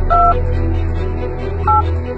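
Touch-tone keypad beeps from a smartphone being dialled: two short two-note beeps about a second and a half apart.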